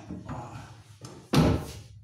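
Plywood cabinet door swung shut against its frame with a loud bang about a second and a half in, after a few softer knocks and rubs of the door.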